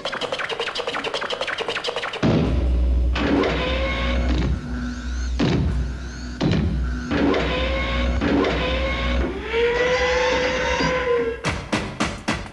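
Dance music for a stage routine. A fast run of sharp beats plays for the first two seconds, then a heavy bass comes in with gliding, bending pitched tones, and the rapid beats return near the end.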